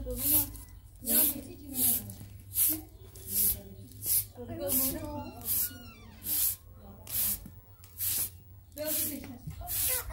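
Short straw hand broom sweeping a wet paved floor in brisk, regular strokes, one swish about every 0.8 s. Voices are heard between the strokes.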